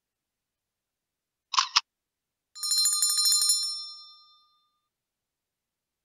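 Subscribe-button sound effect: two quick clicks, then a bell rings with a rapid rattle for about two seconds, fading out.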